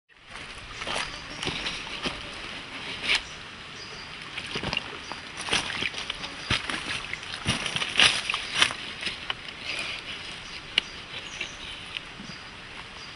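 Wet sloshing and squelching as a hand scoops blood out of the opened body cavity of a butchered wild boar, in irregular sharp splashes and clicks over a steady background hiss.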